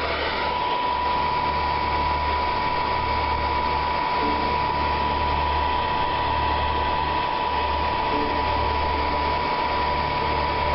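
Miniature wind tunnel's electric fan running steadily: an even hiss with a constant high whine over a low hum that drops out briefly a few times.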